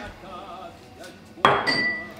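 Kitchenware knocked once: a sharp clink about one and a half seconds in that rings briefly with a high tone.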